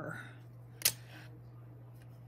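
A single sharp click about a second in, from tools being handled on the tabletop while working polymer clay, over a steady low hum.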